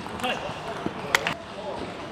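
Plastic table tennis ball clicking off bats and the table in a rally, with a couple of sharp clicks a little past the middle as the point ends.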